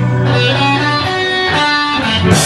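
Live band music led by an electric guitar playing a run of single notes over a held low note, which stops about halfway through.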